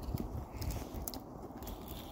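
Tree-climbing spurs' gaffs stabbing into bark in step as the climber works up the trunk, a few short crunching clicks over low rumbling handling noise.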